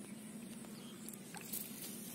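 Faint wet clicks and squelches of muddy water and mud being worked by hand in a shallow hole, a few short sharp ones about three quarters of the way in, over a low steady hum.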